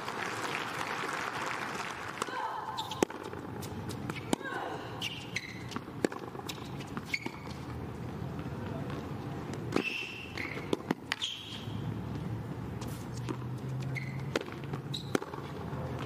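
Tennis ball bouncing and being struck by rackets on a hard court: a string of sharp, irregular pops through a rally, over steady background crowd voices.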